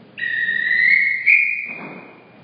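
A referee's whistle blown in one long blast of about two seconds, its pitch stepping up slightly partway through. In kata judging it is the chief judge's call for the decision.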